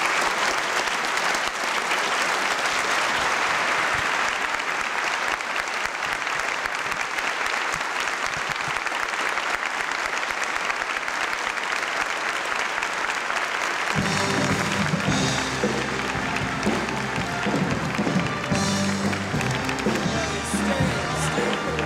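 Theatre audience applauding, a dense, sustained ovation after a speech. About fourteen seconds in, music with a low, steady bass line starts up under the clapping.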